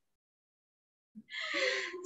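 Dead silence for about a second, then a woman's short breathy vocal sound, a gasp-like breath as she starts to laugh.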